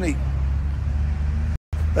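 A motor running steadily with a low hum. The sound cuts out for a split second near the end.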